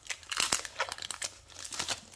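A Yu-Gi-Oh! Duelist Nexus booster pack's foil wrapper being torn open and crinkled by hand, a run of irregular crackles.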